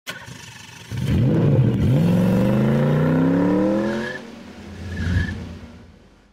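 A car engine revving, its pitch climbing steadily for about three seconds before it drops away, then a shorter swell of noise near the end.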